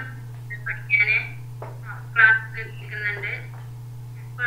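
A person's voice speaking in short broken phrases over a video call, thin and telephone-like, with a steady low hum underneath.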